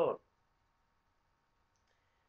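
A man's speaking voice trailing off at the end of a phrase, then a pause of near silence with only a faint steady high hum in the room.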